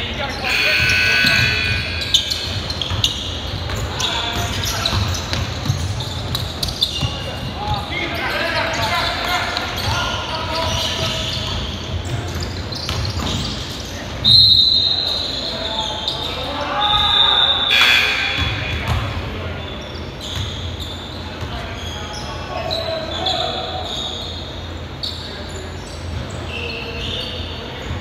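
Pickup basketball game on a hardwood gym floor: a ball bouncing, sneakers squeaking and players calling out, echoing in the large hall. A sharp, high-pitched squeal a little past halfway through is the loudest sound, and a shorter one follows a few seconds later.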